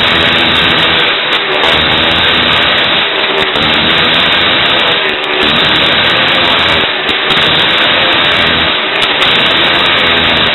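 Motorcycle engine running hard as the bike laps the inside of a wooden Wall of Death drum, its sound swelling and dipping about every two seconds as it circles.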